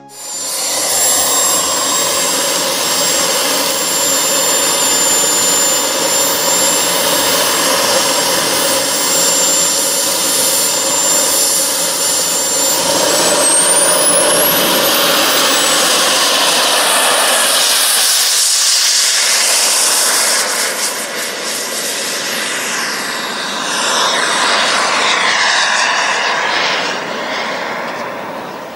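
Kingtech model jet turbine of an RC jet running loud, with a high steady whine that climbs sharply in pitch about halfway through as the turbine spools up, consistent with the throttle opening for takeoff from the runway. Near the end the jet noise sweeps in tone as the aircraft flies past.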